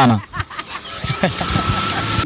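Street traffic: a vehicle running close by, with faint voices in the background and a thin steady high tone that comes in about halfway.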